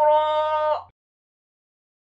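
A male reciter's voice chanting the Quran, holding one long, steady vowel that cuts off abruptly just under a second in, with a faint low hum under it.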